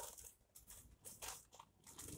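Faint crinkling of a small plastic bag of model scenery grass as it is lifted out of a cardboard box, in a few short, soft rustles.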